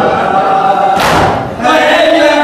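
A group of men chanting a Muharram nauha (lament) together, with one sharp crowd strike of matam (chest-beating) about halfway through, part of a beat that comes roughly every second and a half. The voices drop briefly just before the end.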